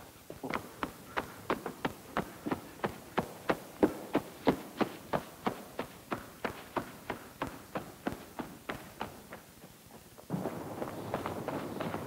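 Quick, even footsteps, about three a second, fading out about nine seconds in. About ten seconds in, a steady rushing noise starts suddenly.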